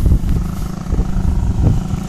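Motorcycle engine idling steadily, with an uneven low rumble underneath.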